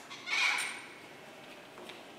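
A hinged door being pushed open, with a short squeaky scrape about half a second in, then a light tick near the end.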